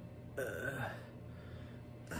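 A man's short throaty burp, about half a second long, beginning under half a second in.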